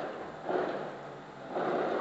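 A man's soft breaths in a pause between sung lines: a short one about half a second in, and a longer intake that rises just before the singing resumes.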